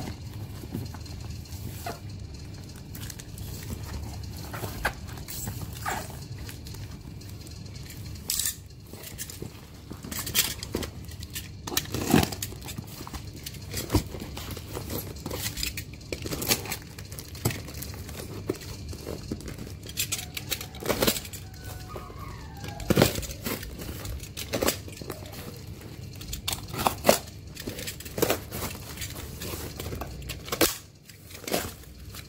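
Hands handling a cardboard parcel wrapped in clear plastic film and tape: plastic crinkling with irregular sharp clicks and knocks.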